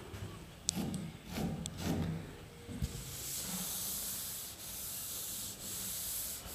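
Board duster rubbing across a chalkboard, wiping off chalk marks: a steady scrubbing hiss from about halfway in, with short breaks between strokes.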